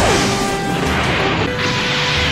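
Anime space-battle sound effects: beam weapons firing and crashing impacts over background music, with a quick falling sweep right at the start.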